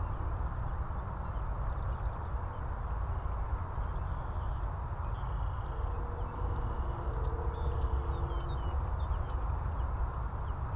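Two Wright R-2600 twin-row radial engines of a B-25 Mitchell bomber running at low power as it taxis, a steady low rumble.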